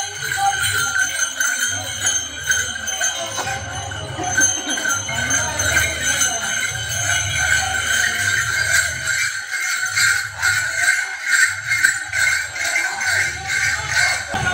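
Small bells on pilgrims' kanwar poles jingling without a break as they walk, over music with a low beat pulsing about once a second.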